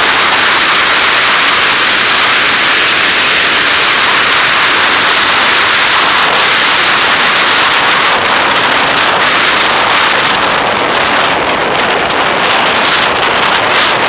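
Loud, steady rush of wind and road noise on the microphone of a camera riding on a moving vehicle, a hiss-like noise with no engine note standing out; it thins a little at the top after about eight seconds.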